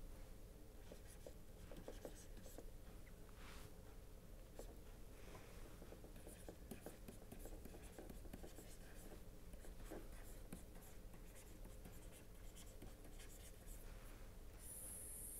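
Faint tapping and scratching of a stylus writing on a pen tablet, over a low steady hum.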